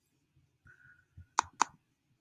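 A computer mouse double-click: two sharp clicks about a fifth of a second apart, opening a folder.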